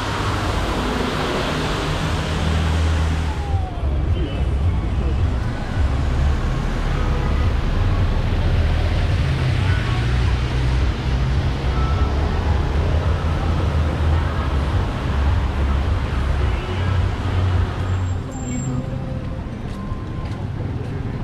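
Busy city street ambience: steady traffic noise with people's voices in the background and a heavy low rumble. The sound shifts abruptly twice, about three and a half seconds in and near the end.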